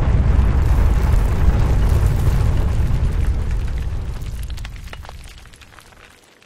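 A loud, deep rumble with scattered crackles running through it, like rock shifting. It fades away over the last two or three seconds.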